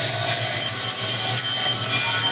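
Continuous loud ringing and clashing of aarti hand bells and cymbals, with a low pulsing beat underneath, as accompaniment to the evening arati worship.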